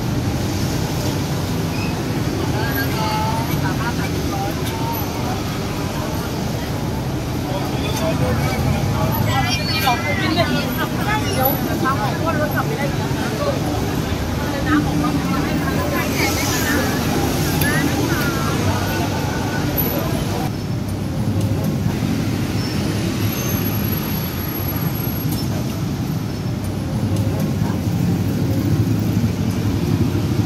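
Busy street ambience: a steady rumble of road traffic under the scattered chatter of a crowd of people.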